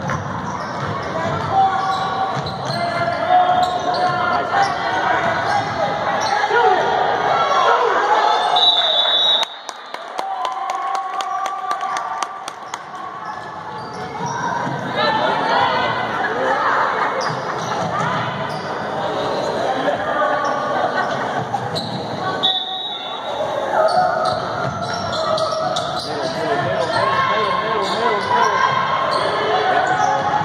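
Basketball game in a gym: a ball bouncing on the hardwood court under continuous voices from players and spectators, with a short high whistle blast about nine seconds in and another a little after twenty seconds.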